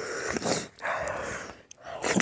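Wet squelching of a bare hand mixing rice with curry gravy on a plate, in two stretches of about half a second each.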